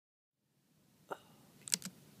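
Faint room tone with a man's short breathy vocal sound about a second in, then two quick clicks.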